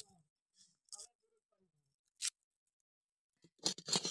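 Hand food-preparation noises: a few short, crisp scrapes and rustles a second or so apart, then a louder burst of splashing and rubbing near the end as hands work in a small steel bowl of water.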